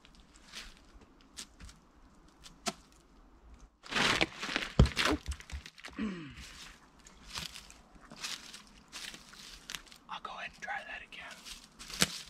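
An exercise-band slingshot is let go about four seconds in, followed by a quick cluster of knocks and thumps as the short firewood rounds fly out and hit the ground. Light knocks of wood being handled follow. The wood rounds do not launch cleanly.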